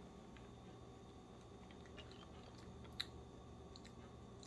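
Near silence: faint sipping and swallowing from a plastic water bottle, with a few small clicks and one sharper click about three seconds in.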